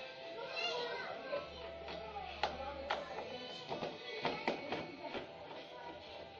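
Sharp metallic clicks and taps from a screwdriver working a tubular door latch, several of them in the second half. Children's voices and music carry on in the background.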